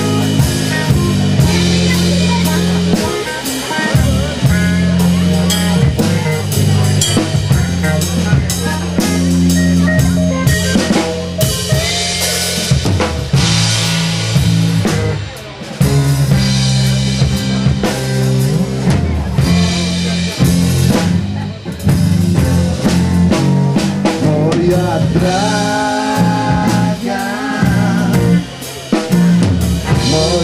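A blues-rock band playing an instrumental passage, led by a busy drum kit with snare rimshots and bass drum over a stepping bass line. Melodic lines come in over the top in the last few seconds.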